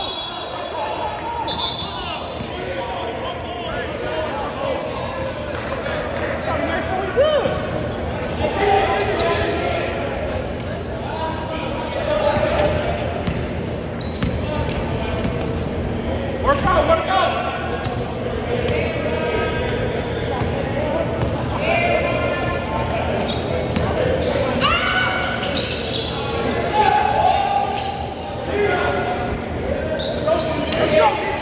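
A basketball being dribbled and bounced on a hardwood gym floor during live play, echoing in a large gym, with players' voices calling out indistinctly through the action.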